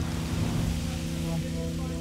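Steady hissing rush of noise, with a low sustained drone of background music underneath.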